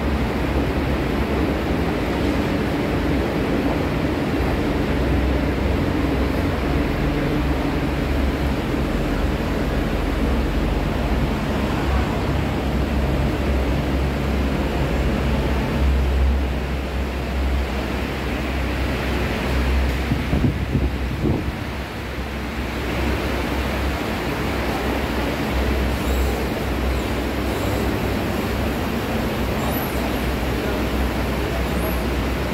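Steady low rumble and hum of a long escalator running, mixed with traffic noise.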